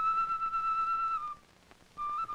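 Solo flute playing a slow melody on the soundtrack: one long held high note that breaks off a little over a second in, followed by a brief pause.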